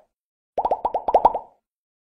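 Cartoon pop sound effect for an animated end card: a quick run of about nine short plops, each dropping in pitch, starting about half a second in and lasting about a second.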